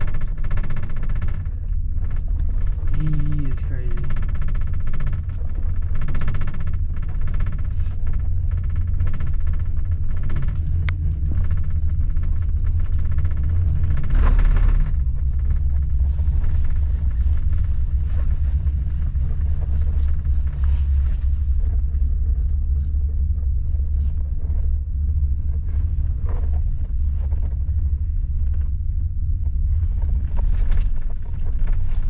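Steady low rumble inside a moving Strawberry gondola cabin as it rides the cable up the slope, with faint, indistinct voices in the first several seconds.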